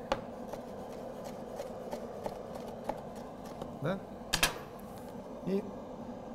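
Chef's knife slicing a cucumber into thin julienne strips on a wooden cutting board: quick, even taps of the blade on the board, about three to four a second, then one louder knock about four and a half seconds in.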